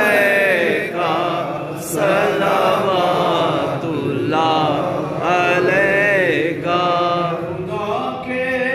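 A man chanting unaccompanied into a microphone in long melodic phrases with wavering, gliding pitch, broken by short pauses for breath.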